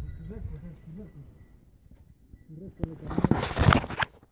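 Faint distant voices in the first second, then a loud burst of rustling and rubbing noise from the phone being handled against a gloved hand and jacket near the end.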